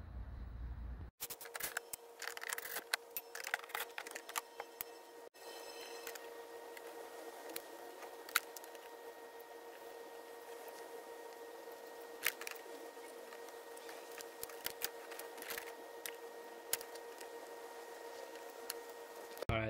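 Quiet handling noises: scattered light clicks and scrapes of hands working a seat-belt strap against the hard plastic body of a ride-on toy car while spots are marked with a marker, over a faint steady hum.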